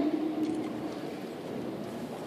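Steady background din of a crowded hall, with a faint click about half a second in.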